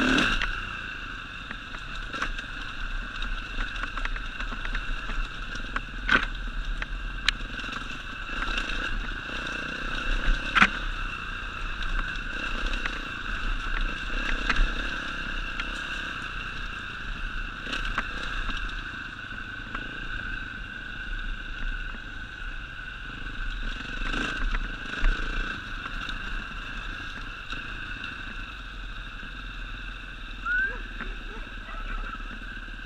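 Enduro dirt bike engine running at a steady, even pitch while riding a rough dirt trail, with scattered sharp knocks and clatter from stones and bumps.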